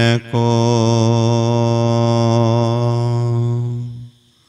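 A man chanting a devotional verse, holding the last syllable as one long steady note that fades out near the end.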